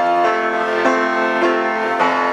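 Instrumental introduction to a choir song: held chords that change about every half second.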